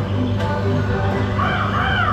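Dark-ride soundtrack passing from the dwarfs' scene music into the Evil Queen's scene, over a steady low hum. Near the end, a high wavering cry rises and falls in pitch.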